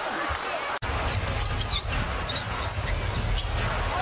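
Basketball arena sound during live NBA play: a basketball bouncing on the hardwood among short high squeaks and crowd murmur. Broken by a sudden brief dropout about a second in, where the footage cuts.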